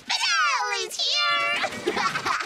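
A cartoon character's high voice, heavily pitch-warped by video-editor audio effects, drawn out into two long wavering calls that fall in pitch: the first about a second long, the second shorter.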